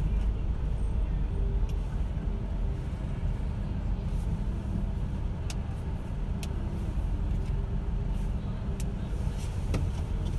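Steady low rumble of a car's engine and running gear heard from inside the cabin as the car creeps along and comes to a stop in traffic, with a few faint clicks.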